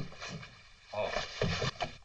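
A man's short startled exclamation, "Oh," about a second in, after a brief click at the start; otherwise quiet.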